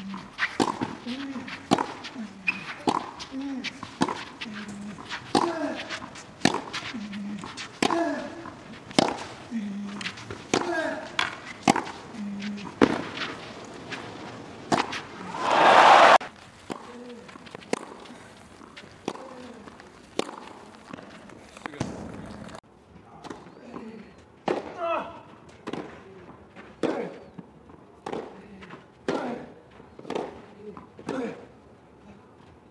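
Professional clay-court tennis rally heard at court level: racket strikes on the ball about once a second, each shot with a player's short grunt. About fifteen seconds in, the rally ends and there is a short, loud burst of crowd noise. After a quieter stretch, a second rally of racket strikes and grunts starts.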